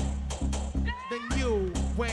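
Vogue ballroom dance track over a sound system: a heavy bass beat with sharp percussion hits, and a short gliding pitched sample that loops about every two seconds.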